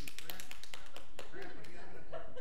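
A quick, irregular run of sharp taps and clicks, densest in the first second, over faint murmured voices.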